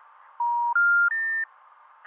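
Telephone special information tone: three steady beeps stepping up in pitch, each about a third of a second long, heard through a phone line. It signals the recorded announcement that the dialled number does not exist.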